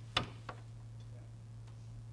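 Quiet room tone with a steady low hum. One sharp click comes shortly after the start, and a fainter tick follows about a third of a second later.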